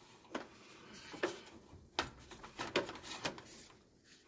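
A sewer inspection camera's push cable and reel being pulled back, with about five irregular clicks and knocks.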